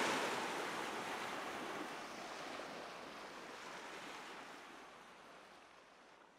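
A steady rushing noise, like wind or surf, fading out gradually to silence.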